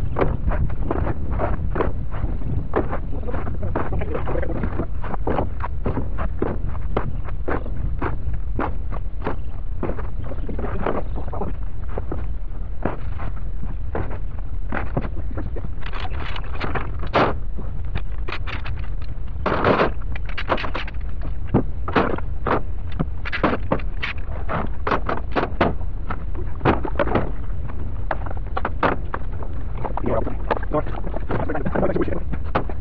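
Wooden concrete-formwork boards clattering as they are handled and stacked onto a pickup truck's bed: a steady run of sharp wooden knocks, sharper and louder from about halfway. Wind buffets the microphone throughout.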